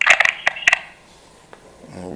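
A cluster of sharp clicks and crackles on the telephone line in the first second as the caller's speech stops, then a lull with only faint room tone and one more soft click.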